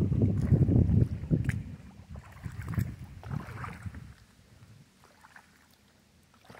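Paddle strokes in lake water beside a small coracle: the wooden blade dipping and splashing, over low wind rumble on the microphone for the first second or so. A few softer splashes follow, then the sound fades to faint.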